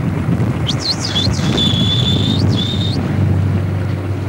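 Bottlenose dolphins whistling: a few quick high sweeps up and down about a second in, then one high whistle held for about a second and a half. Under them is steady wind and boat noise on the microphone.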